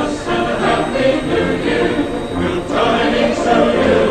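A choir singing.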